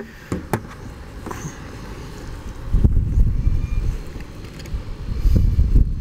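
Wind rumbling and buffeting on the microphone in uneven gusts, strongest about three seconds in and again near the end, with a couple of light clicks near the start as the fuse box and test leads are handled.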